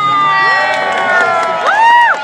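Children in a crowd shrieking and cheering: several long high-pitched screams held together and slowly falling in pitch, with a short rising-and-falling shout near the end.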